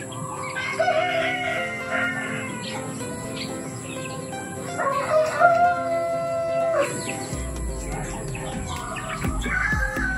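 Rooster crowing three times, about four seconds apart, each crow about two seconds long with a held, stepped tone.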